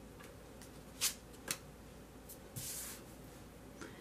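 A card being drawn from a deck and laid on a wooden table: two light taps about half a second apart, then a short sliding rustle, with a faint tick near the end.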